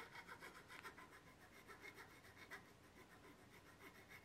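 Faint, quick, even strokes of a nut-slotting file rasping into a cow-bone guitar nut, cutting and widening a string slot.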